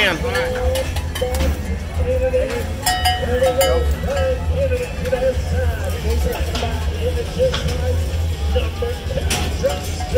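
Rodeo arena background: a steady low rumble and distant loudspeaker sound, with a few brief metallic clinks, as from the bell on a bull rope.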